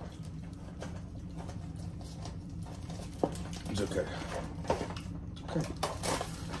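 A small cardboard box being handled and opened: scattered soft clicks and rustles over a steady low hum.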